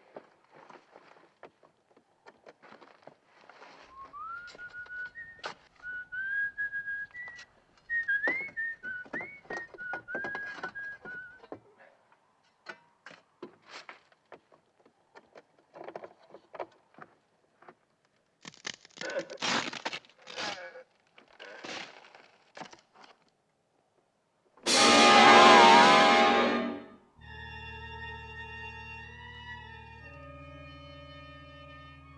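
A man whistling a short tune, over scattered knocks and scrapes in a freshly dug grave. About 25 seconds in comes a sudden loud blast, the loudest sound here, followed by a sustained, eerie music chord.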